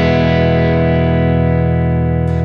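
Electric guitar's open first-position E major chord, struck just before and left ringing steadily.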